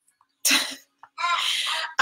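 Two breathy vocal sounds close to the microphone: a short burst about half a second in, then a longer, hissy one from just past a second.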